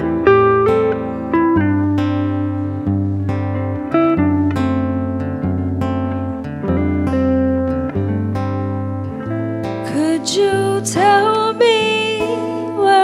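Live band music: the intro of an indie song, with acoustic and electric guitars picking notes over held low bass notes. A woman's singing voice comes in about ten seconds in.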